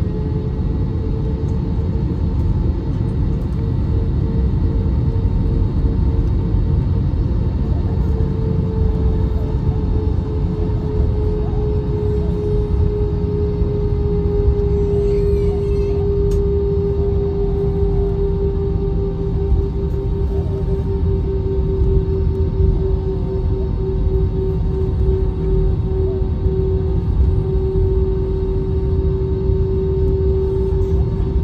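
Jet airliner cabin noise while taxiing: a steady low rumble from the engines at taxi power, with a droning tone over it that sinks slightly in pitch about a third of the way in.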